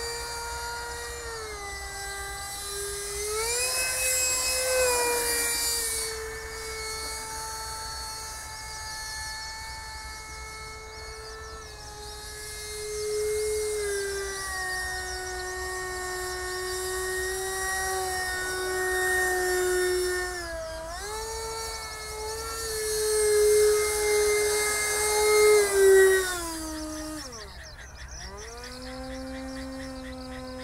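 Electric ducted fan of a radio-controlled Möwe (Mehve) model aircraft whining in flight, its pitch holding steady for stretches and gliding up or down several times. It is loudest a little before the end, then the pitch falls steeply and settles at a lower, steady whine.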